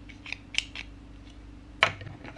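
Hard plastic building-block marble-run pieces clicking as a crocodile-shaped track piece is handled and pressed onto a track section: a few light clicks, then a single sharper snap near the end.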